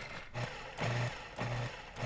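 Food processor pulsed in short bursts, about four in two seconds, its motor whirring while the blade grinds set caramel and toasted hazelnuts into praline.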